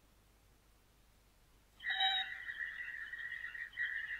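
A cartoon robot's electronic beep voice: after near silence, a long, steady, high beep starts about two seconds in.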